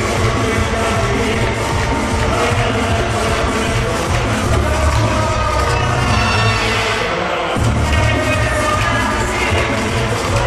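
Caribbean dance music with a steady beat, played loud. The bass drops out for about a second and a half past the middle, then comes back.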